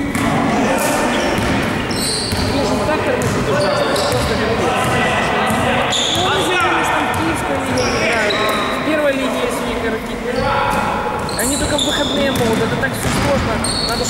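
A basketball dribbling and bouncing on a gym floor during a game, with players' voices echoing in a large hall.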